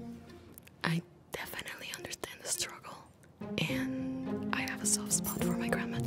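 Quiet background music of low plucked and bowed strings, with whispered voices over it.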